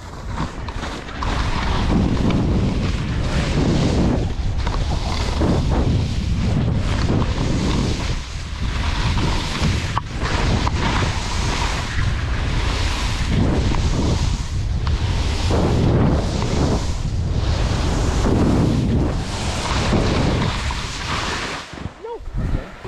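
Wind rushing over the camera microphone during a downhill ski run, with the skis scraping through snow, the noise surging every second or two with the turns.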